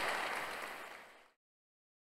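Audience applause fading out, ending in silence about a second in.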